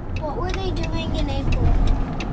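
Car cabin noise while driving: a steady low rumble of road and engine, with a faint voice about half a second in and a few light clicks.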